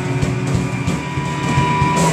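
Live indie rock band playing an instrumental passage on electric guitars, bass guitar and drum kit. One high note is held from about halfway through.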